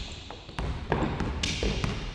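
A basketball being dribbled on a hardwood gym floor: a few separate bounces as a player brings the ball up the court.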